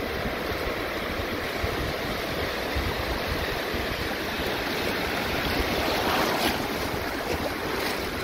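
Water sloshing and lapping at the surface close to the microphone as a hand holds a fish in the water and releases it; a steady splashing noise that swells a little about six seconds in.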